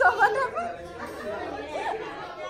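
A young child's high voice right at the start, then indistinct chatter of several people.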